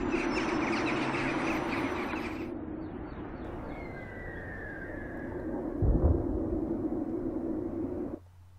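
Intro sound effects: a rushing whoosh over a steady low drone, the whoosh stopping sharply about two and a half seconds in, then a low boom about six seconds in.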